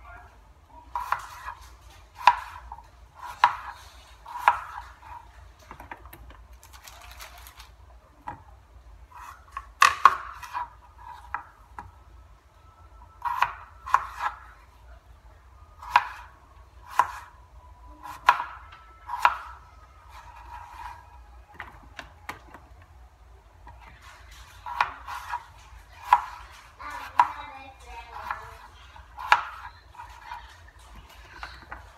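Red potatoes being cut into chunks with a knife on a plastic cutting board: a series of sharp knocks of the blade on the board, roughly one a second, coming in bursts with short pauses between.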